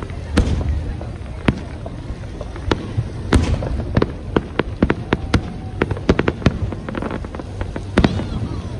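Fireworks display: a rapid, irregular run of sharp bangs and crackles from shells bursting, about two or three a second, over a steady low rumble.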